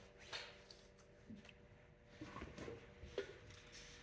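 Faint sloshing and a few small splashes as hands rinse in a tub of clay-laden water, over a faint steady hum.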